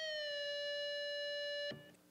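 Electric guitar sustaining one note at the 15th fret of the B string, bent up a whole step, then let back down about a third of a second in. The note holds steady after the release and is muted abruptly near the end.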